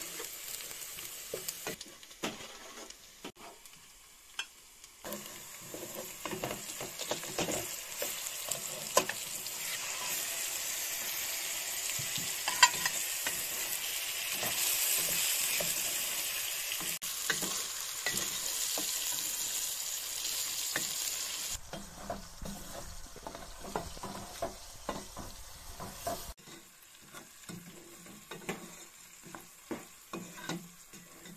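Chopped onions and chicken pieces sizzling in hot oil in a stainless steel pot, with a wooden spatula stirring and scraping against the pot. The sizzle is loudest through the middle and drops off suddenly about two-thirds of the way through.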